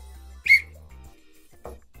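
One short, sharp blast on a referee's whistle, signalling half-time.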